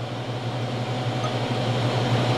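Steady low mechanical hum with an even hiss, from air-handling machinery in the room.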